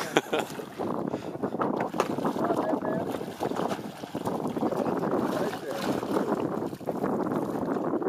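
Steady splashing and sloshing of water at the side of a small boat, where a hooked sturgeon thrashes at the surface as it is brought to the net.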